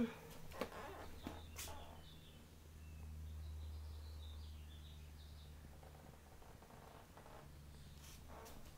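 Quiet room tone with a low steady hum that swells for a few seconds mid-way. There are a few soft knocks in the first two seconds and faint high bird chirps from outside the window.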